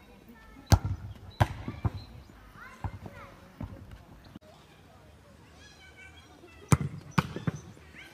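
A football being kicked and bouncing on an artificial-turf pitch, heard as a series of sharp thuds. The two loudest come about a second in and near the end, with lighter ones between.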